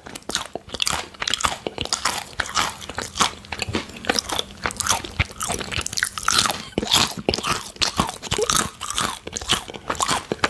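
Close-miked crunching and chewing of crisp plantain chips: a bite, then a long run of irregular, rapid crackling crunches as the chips are chewed.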